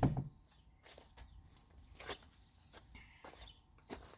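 Faint footsteps and scuffing on dirt and gravel, with a few light scattered knocks as cinder blocks are handled.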